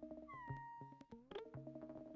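Avant-garde electronic synthesizer music: sparse clicks and short pitched blips over held tones, with one tone sliding down in pitch about a third of a second in and a denser cluster of clicks just after the middle.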